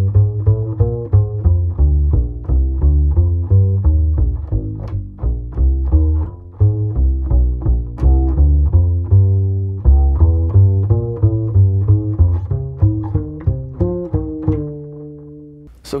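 Upright double bass played pizzicato: a slowed-down line of single plucked notes running through the arpeggios of a B-flat 7 to E-flat (V–I) progression. It ends on a longer held note near the end.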